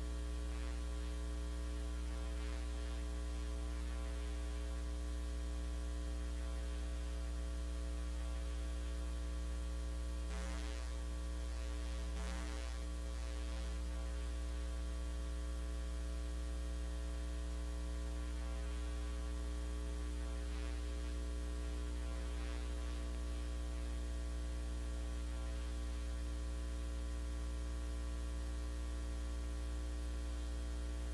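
Steady electrical mains hum with a buzzy stack of overtones on the sound system's audio line, unchanging throughout, with two faint, brief noises near the middle.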